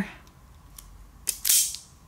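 Hand wire stripper closing on an injector-harness wire and stripping about 4 mm of insulation: a couple of light clicks, then a sharp snap about a second and a half in as the jaws pull the insulation off.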